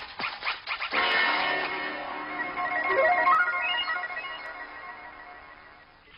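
Electronic synthesizer soundtrack: a short run of scratchy pulses, then about a second in a sustained chord of many steady tones with a rising sweep in the middle, slowly fading away toward the end.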